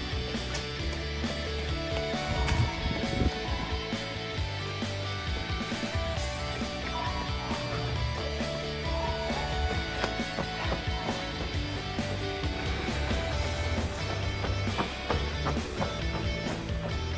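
Background music: a guitar-led instrumental track over a steady low bass line.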